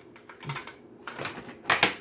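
A tarot deck being shuffled by hand: a string of quick papery snaps and taps, the loudest a close pair of snaps near the end.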